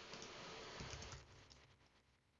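Faint typing on a computer keyboard, stopping a little over a second in.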